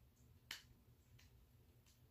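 Near silence broken by one faint, sharp tap about half a second in and two softer taps later: a paint-covered hand patting against a stretched canvas.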